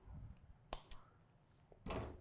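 Faint clicks and handling sounds from a driver's adjustable hosel being worked with its loft wrench, with two sharp clicks close together just before the middle.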